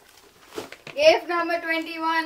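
A person's voice: after about a second of faint rustling, a drawn-out exclamation holding one steady pitch.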